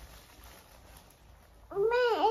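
A quiet room, then near the end a young child's high-pitched, drawn-out vocal sound that dips and rises in pitch.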